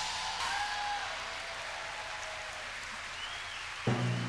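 Audience applause, an even patter that slowly fades after the number's final cutoff. Just before the end the pit band comes back in with a low note.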